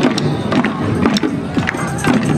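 Small hand-held drums of a marching dance troupe struck in a beat about twice a second, over a murmur of parade crowd.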